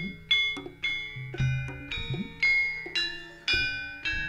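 Javanese gamelan playing: struck bronze metallophones ring out in a steady pattern, with strong strokes about once a second and low beats underneath.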